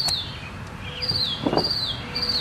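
A bird calling: three short, high whistles, each sliding down in pitch, about half a second apart.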